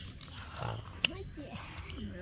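Boys' voices making short wordless vocal sounds, with a single sharp click about a second in.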